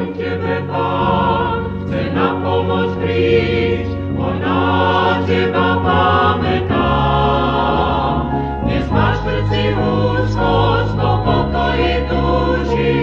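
A vocal group singing a sacred song in harmony, coming in at the start over sustained keyboard accompaniment. It is heard from an old live cassette-tape recording.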